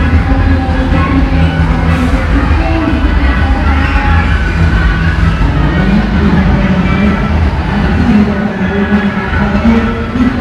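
A melody plays from a coin-operated kiddie ride that is running, over a steady low rumble.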